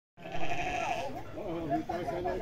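A goat bleats once, a single long call of about a second right at the start, over men's voices talking.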